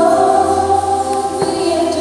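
A choir and a female solo voice singing long held notes, with a low note joining underneath about a third of a second in.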